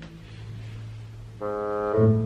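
Background music: a low sustained note, joined about one and a half seconds in by a louder, steady, buzzy horn-like held tone.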